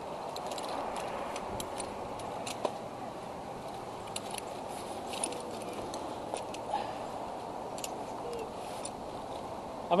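Faint scattered clicks and rustles of gear being handled, a few small items knocking together, over a steady background hiss.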